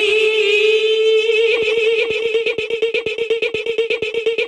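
A sung old-school house vocal sample holding a long note through echo. From about a second and a half in, it is chopped into rapid, even stutters, about eight a second, by a 16th-note auto-pan working as a volume chopper.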